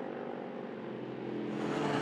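Race car engine running at speed on track, a steady engine note that grows louder as the car approaches.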